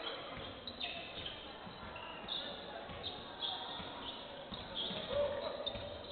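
Basketball bouncing on a hardwood court during live play, with short sneaker squeaks and players' shouts in the arena.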